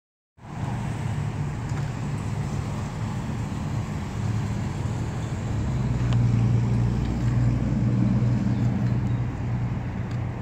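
Steady low hum of road vehicles, swelling a little about halfway through and easing near the end.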